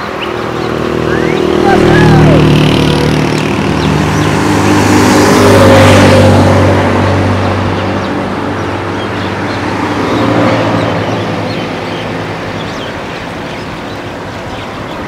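Road vehicle engines running, with a vehicle passing close by; the sound swells to its loudest about six seconds in and fades away toward the end.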